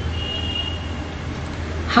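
Steady low background hum with a faint, thin high tone in the first half.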